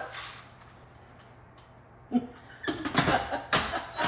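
An Instant Pot lid being set onto the pot and twisted to lock, with a cluster of clicks and knocks in the last second or so.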